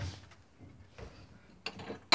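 Light clicks and knocks of a kitchen cupboard door being opened and a drinking glass being handled: a click about a second in and a few quick clicks near the end.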